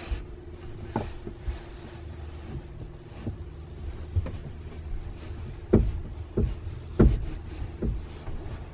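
Dull thumps and knocks of seat cushions and the bunk-bed parts of a small camper trailer being handled and fitted into place, several separate knocks with the loudest about two-thirds of the way through and another near the end, over a steady low hum.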